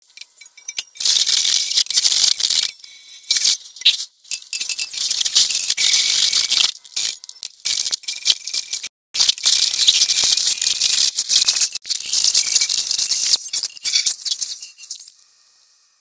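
A film soundtrack played back at extreme speed: score, voices and effects squeezed into a high, hissing rattle that cuts in and out in short choppy stretches, then fades out near the end.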